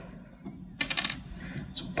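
A quick cluster of light metallic clicks about a second in and one more near the end: small steel valve keepers being handled with a pick in the valve spring retainer of a cylinder head.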